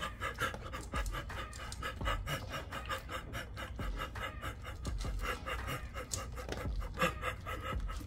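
A dog eating dry kibble from a stainless steel bowl: a quick, even run of chewing and crunching sounds, several a second.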